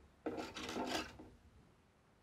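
A short rasping, rubbing sound about a second long, from a needle and thread being handled and pulled.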